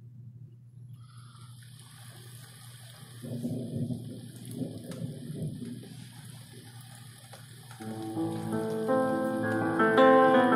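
Rain falling with a rumble of thunder swelling and fading in the middle, the atmospheric intro of a rap track, with piano notes coming in near the end.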